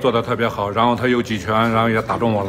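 Speech only: a man talking in Mandarin Chinese.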